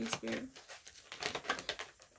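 A deck of oracle cards shuffled by hand: a quick, uneven run of short soft clicks as the cards slide and tap together.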